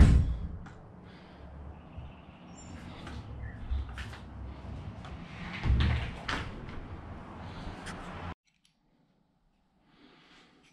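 A storage closet door being handled and pulled shut by its knob, with the loudest burst of door noise about six seconds in. A loud thump comes right at the start, knocks and handling noise run between, and the sound cuts off abruptly a little past eight seconds.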